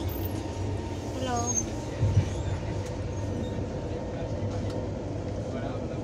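Passenger train coach running, heard from inside the carriage as a steady low rumble, with a sharp knock about two seconds in.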